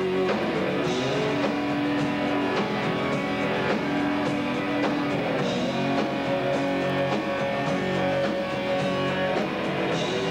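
Rock band playing live: electric guitars holding sustained notes over drums, with cymbal washes about a second in and again about halfway through. Recorded through a consumer camcorder's built-in microphone.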